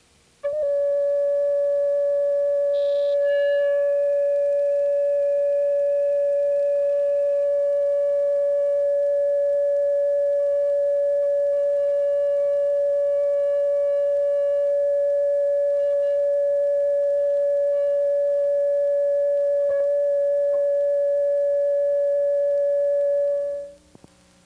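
Steady reference test tone, one unchanging pitch, played with colour bars on a videotape. It starts about half a second in and cuts off shortly before the end.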